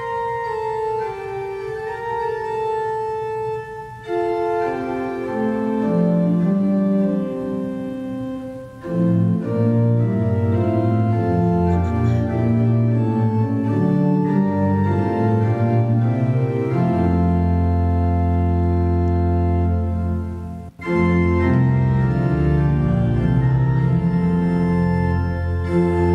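Organ playing a hymn tune. It begins with a thin melody line, fills out into full chords after a few seconds, and a deep sustained bass comes in at about the middle. There is a brief break near the end before it carries on.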